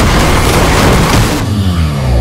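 Loud action-film sound mix dominated by vehicle engine noise. About one and a half seconds in, the high end drops away and a deep tone slides down in pitch.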